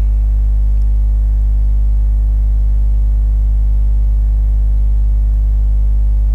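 Steady low electrical hum, a mains hum with a ladder of overtones, unchanging throughout.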